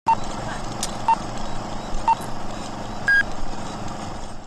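Electronic countdown beeps: three short beeps a second apart, then a longer, higher beep, over a steady background hum.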